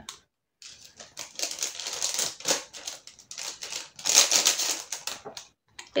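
Small jewellery packaging being handled and unwrapped: irregular rustling and crinkling with many quick clicks and crackles, starting about half a second in and stopping just before the end.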